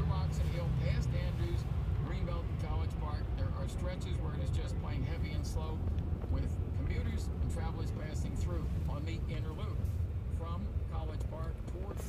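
Faint talk from a radio traffic report over the car's speakers, with a steady low road rumble inside the cabin of a Tesla electric car creeping along in stop-and-go traffic.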